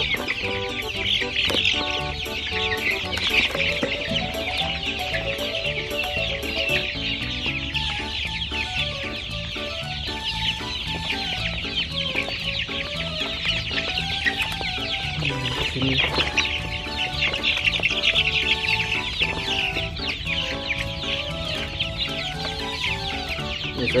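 A flock of young laying hens calling continuously as they feed, a dense chatter of many short high calls. Background music with a slow stepping melody plays underneath.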